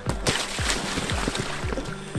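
A body sliding along a wet plastic slip-and-slide, a steady watery hiss and splash, over background music with a steady kick-drum beat.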